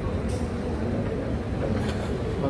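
A woman's voice over a hall public-address system, distant and muffled under a steady low rumble.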